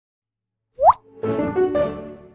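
A short upward-gliding plop sound effect about three-quarters of a second in, followed from just past a second by a brief musical jingle of a few pitched notes.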